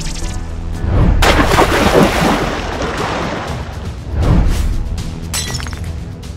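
Cartoon crashing and splashing sound effects for a giant riveted metal robot rising out of the sea: loud hits about a second in, at two seconds and just past four seconds. Background music plays under them.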